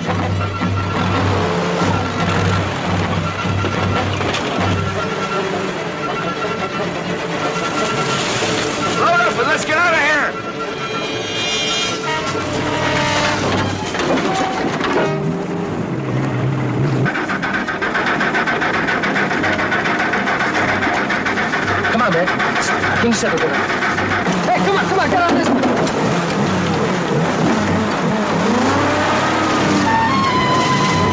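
A dense film soundtrack of music and a running motor vehicle engine, with pitch glides and repeated short tones above it.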